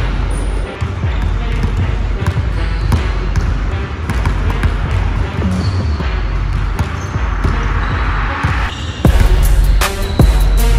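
A basketball dribbled on a hardwood gym floor, bouncing repeatedly at an uneven pace, over loud background music; the sound gets louder and brighter about nine seconds in.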